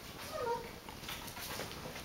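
A Xoloitzcuintli giving one short whine that falls in pitch, followed by a few faint clicks.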